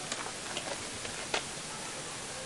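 Steady background hiss with a handful of short, faint clicks or taps scattered through it; the sharpest one comes past the middle.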